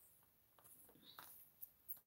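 Near silence, with a few faint rustles and light ticks of a piece of cloth being handled and laid on a table.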